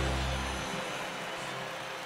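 The last held low chord of a live worship band dies away about half a second in, leaving a steady, even noise.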